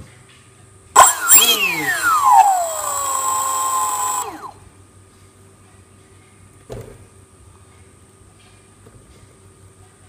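Small brushless electric motor of an RC jet boat run in short bursts on the bench. A sudden loud burst comes about a second in, then a whine that falls in pitch over about two seconds, holds a steady tone and cuts off after about four seconds. A short knock follows later.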